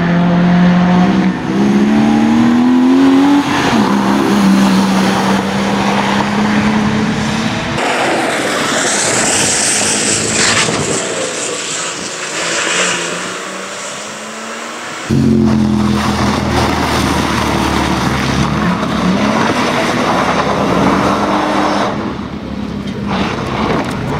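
BMW E46 Compact's engine revving hard through a barrier slalom, the pitch climbing and dropping several times with lifts and gear changes. For several seconds in the middle it is farther off and fainter under a hiss, then it comes back loud and close.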